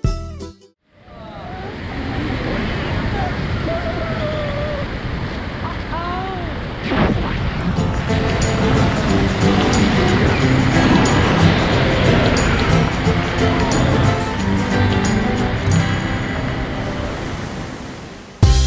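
Steady rush of freefall wind over the camera microphone during a tandem skydive, with a few faint voice-like rises and falls in the first half. Background music comes back in under the wind about halfway through.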